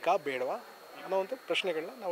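A man speaking in Kannada into a close interview microphone, in quick, animated phrases.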